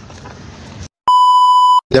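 A single steady, high-pitched beep about three-quarters of a second long, edited in with dead silence just before and after it: a censor bleep. Before it, faint street background.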